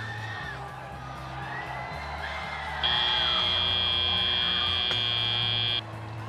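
Arena music plays under crowd noise, then about three seconds in a loud, steady, high electronic buzzer sounds for about three seconds and cuts off suddenly: the end-of-match signal as the match clock reaches zero.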